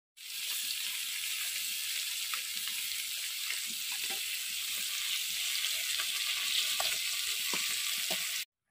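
Fish pieces frying in hot oil in a metal kadai, a steady sizzling hiss with small crackles, as a spatula turns them with light scrapes and taps against the pan.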